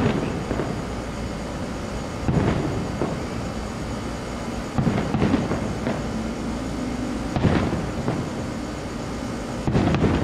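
Aerial fireworks shells bursting: a series of booms, each with a ringing tail, about every two to three seconds over a steady background noise.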